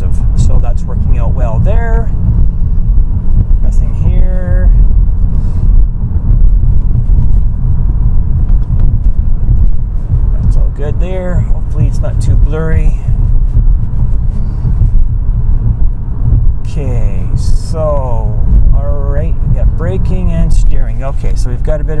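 Steady low road and engine rumble inside an Infiniti G37's cabin while driving at moderate speed, the VQ-series V6 running under light load.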